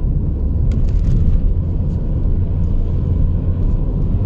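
Steady low rumble of a 2012 Jeep Patriot being driven, engine and road noise heard from inside the cabin, with a few faint ticks about a second in.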